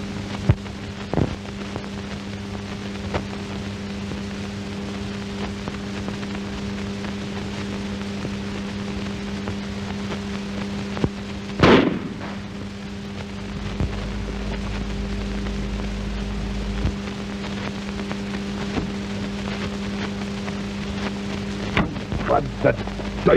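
Worn soundtrack of an old film: a steady crackling hiss over a constant low hum, with scattered clicks and pops. A single loud, sudden noise comes about twelve seconds in, and a low rumble runs for a few seconds after it.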